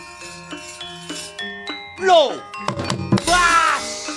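Javanese gamelan playing, its bronze metallophones struck in a steady stream of ringing notes. Over it come two loud vocal cries that fall in pitch, the first about two seconds in and the second, longer one about three seconds in.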